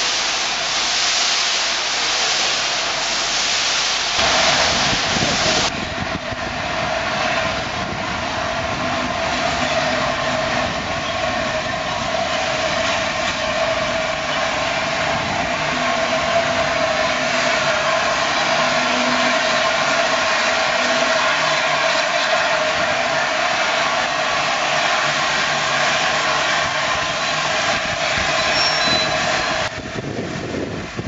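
Railway sounds of steam-hauled rolling stock: for the first few seconds, coaches rolling past with a bright hiss. After an abrupt change about five seconds in, the LNER Class A4 Pacific steam locomotive moves slowly, with a steady mid-pitched drone over continuous noise.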